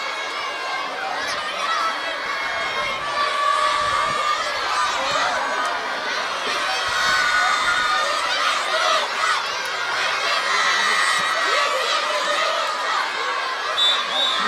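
A crowd of schoolchildren shouting and cheering, many high-pitched voices overlapping in a steady din.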